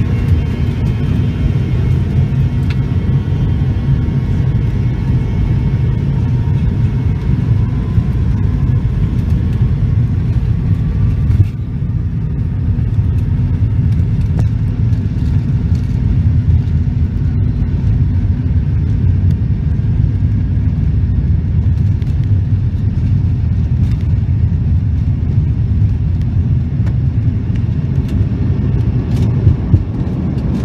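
Cabin of an MD-88 rolling on the ground: a loud, steady low rumble of the wheels and its two tail-mounted Pratt & Whitney JT8D turbofans, with a faint whine over it. A single thump about a third of the way in.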